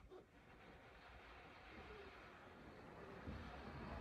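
Near silence: a faint hum from the electric drive motors of a Jazzy power wheelchair creeping across carpet, growing slightly louder toward the end.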